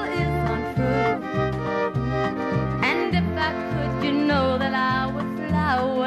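Country band playing an instrumental passage: a melody instrument with sliding, bending notes over a steady, regularly pulsing bass line.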